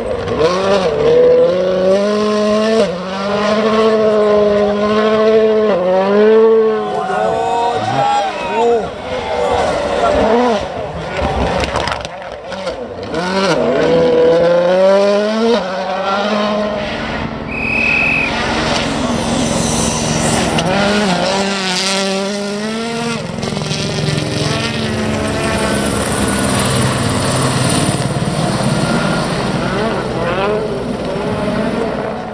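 M-Sport Ford Fiesta World Rally Cars at racing speed on a snow stage, their turbocharged four-cylinder engines revving up and dropping back again and again through gear changes. One car passes in the first half and a second car comes through after a cut about halfway.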